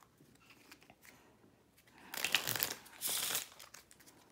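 A deck of playing cards being handled in the hands: faint soft rustles, then two brief flurries of card noise about two and three seconds in.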